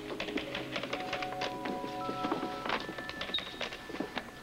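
Background music of held synthesizer notes that step from one pitch to another, with a fast, irregular run of light clicks over it.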